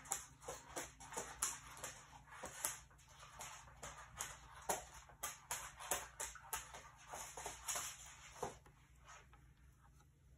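A dog's claws clicking and scrabbling on a hard floor as she spins chasing her tail: quick, irregular clicks, several a second, dying away near the end.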